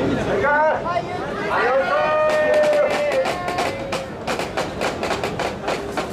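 A man's voice sings a drawn-out festival chant over crowd noise, holding one long note for over a second. It is followed by a quick run of sharp clacks, several a second.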